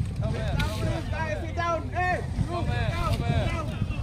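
Several voices calling out, untranscribed, over the steady low rumble of boat engines.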